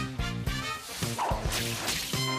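Television title theme music with a steady beat, and a whooshing sound effect sweeping through the second half.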